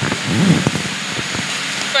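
A steady hiss of background noise under a short, low murmured voice in the first second.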